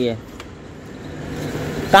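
A road vehicle's engine and tyre noise growing louder over about two seconds, a steady low hum under it.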